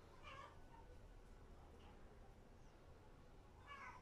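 Near silence: low room hum, with two faint short squeaky sounds, one just after the start and one near the end.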